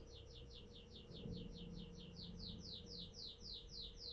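A bird singing faintly: a long, even series of quick falling chirps, about five a second.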